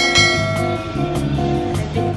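Background music: a guitar-led track.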